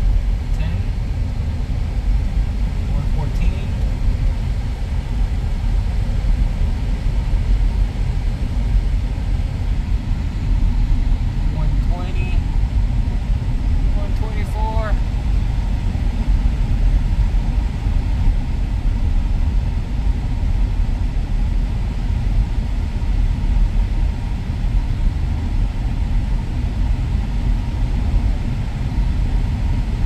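Steady low rumble of road, tyre and engine noise inside a 2019 Ford Ranger pickup's cab while it is driven at about 60 km/h.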